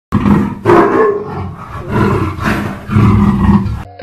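A loud, rough roar coming in four swells, which cuts off abruptly just before the end, where music with light percussion starts.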